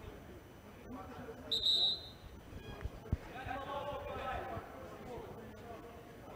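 Players' voices talking indistinctly in a huddle. A short, steady, high whistle blast about a second and a half in is the loudest sound, and a single dull thud follows about three seconds in.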